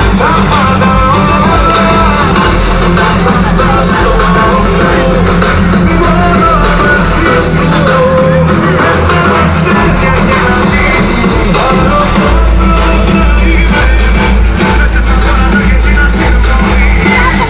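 Live Greek laïko music through an outdoor concert PA: a band with strong bass and a lead voice singing, loud throughout.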